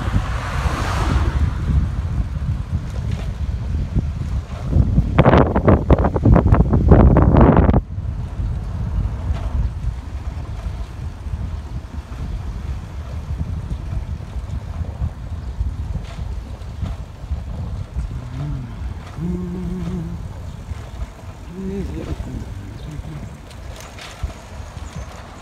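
Wind buffeting the microphone of a phone carried on a moving bicycle, a steady low rumble, with a much louder rush of wind noise from about five to eight seconds in that cuts off suddenly.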